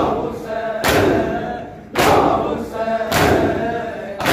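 Mourners doing matam, beating their chests with their palms in unison about once a second, while the men chant a noha together between the beats.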